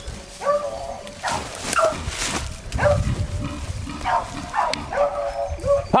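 Beagle baying at a wild boar: a run of yelping bays, about one or two a second, some drawn out into short howls.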